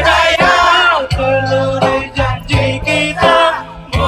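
Live band music with a vocalist singing a melodic line over steady bass notes, loud and continuous.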